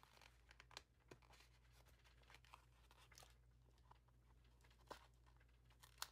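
Near silence, with faint scattered rustles and small ticks of paper sticker sheets being handled and peeled; one slightly louder tick comes near the end.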